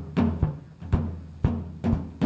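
A drum playing a steady rhythmic beat of low, sharp-edged hits, about two to three a second, as the opening of a song.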